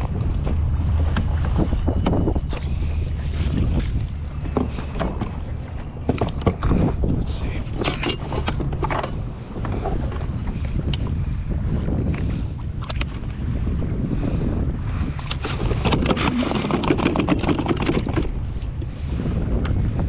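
Wind buffeting an action camera's microphone over the slosh of water against a kayak hull. Scattered clicks, knocks and rattles run through it as a fish and gear are handled on the deck.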